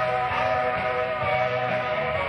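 Live rock band playing: sustained held tones over a steady bass line.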